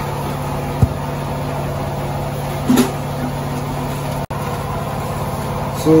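Steady low hum of a running motor, with a single sharp click about a second in.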